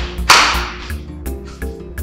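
Film background music with held notes, cut by a sudden noisy whip-like hit about a third of a second in that fades over half a second.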